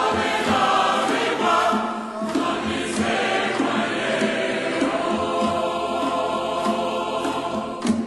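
A choir of many voices singing together.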